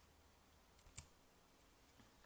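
Two short sharp clicks about a quarter second apart, the second louder, over faint room hiss.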